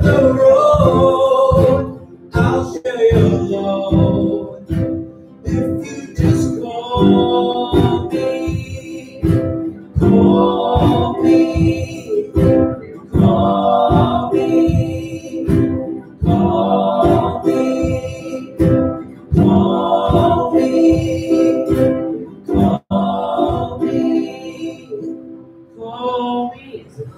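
Live singing accompanied by strummed acoustic guitar, a steady strumming rhythm under the voice, dying away near the end.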